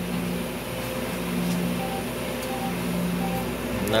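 Electronic game sounds from a sweepstakes slot-machine terminal: low steady tones that come and go, with three short higher beeps spaced under a second apart about two seconds in.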